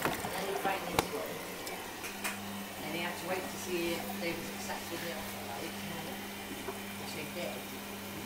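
Beko front-loading washing machine on a 30° mini wash: a click about a second in, then the drum motor starts with a steady low hum as the wet laundry tumbles and sloshes in the drum.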